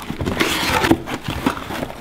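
Cardboard shipping box being torn open by hand, its flaps pulled apart, with an irregular run of scraping and tearing noises.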